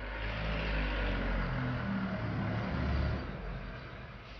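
A motor vehicle's engine rumbling with a wash of road noise, steady at first and fading away near the end.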